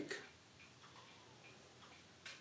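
Near silence: faint room tone with a few soft, irregular ticks.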